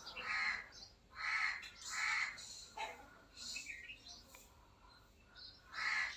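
A few short, harsh bird calls, most of them in the first couple of seconds and one more near the end.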